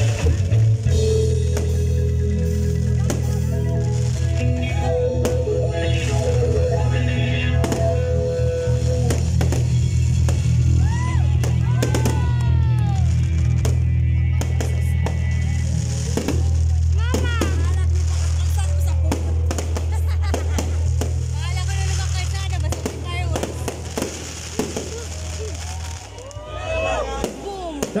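Aerial fireworks crackling and banging over a live band holding a sustained low chord, with shouting voices from the crowd. The band's low sustained sound stops about two seconds before the end.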